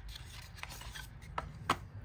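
Paperboard cosmetics box being opened by hand: card rubbing and sliding as the inner tray is pulled out, with a few light taps, the sharpest near the end.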